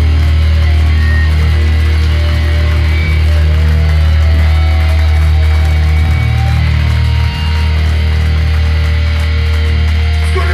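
Hardcore band playing live: loud distorted guitar and bass holding long, low sustained chords that shift about three, six and seven seconds in.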